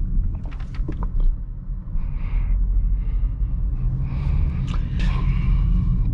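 Interior noise of a 2018 Toyota Corolla 1.6-litre on the move: a steady low rumble of engine and road, with a few light clicks around the first second.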